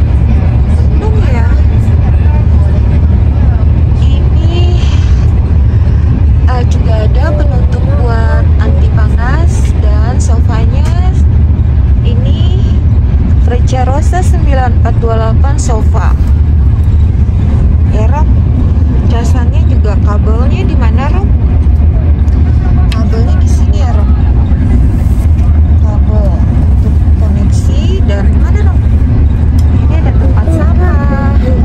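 Steady deep rumble of a Frecciarossa high-speed train running at speed, heard inside the passenger carriage, with people's voices coming and going over it.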